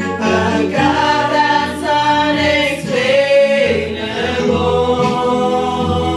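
A church choir singing a praise song, several voices together, with sustained low notes beneath.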